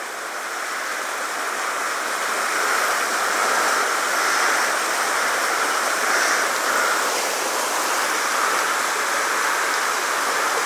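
A small river running over a shallow riffle: a steady rush of water that grows a little louder over the first few seconds.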